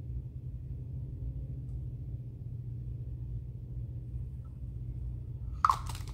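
A steady low hum of room tone, with one short sharp click near the end.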